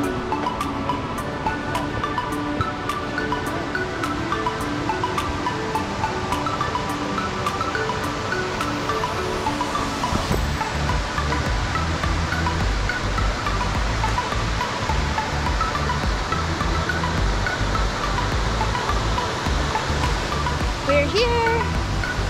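Background music laid over the footage, with a low bass part that comes in about halfway through. The steady rush of creek water lies faintly underneath.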